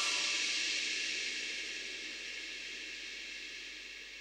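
A cymbal crash from the backing music ringing out and fading slowly after the music stops.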